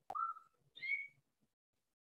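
A faint click, then two short whistle-like squeaks, the second higher in pitch than the first.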